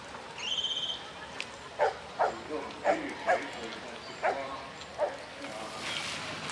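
A dog barking: six short, sharp barks over about three seconds.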